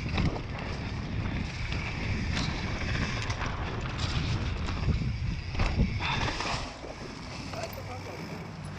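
Wind buffeting an action camera's microphone and mountain-bike tyres rolling over dirt and dry leaves on a fast descent, with sharp knocks and rattles from the bike over bumps and a jump. It goes quieter near the end as the bike slows down.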